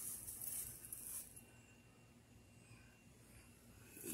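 Near silence: faint outdoor background, with a soft high hiss in the first second or so.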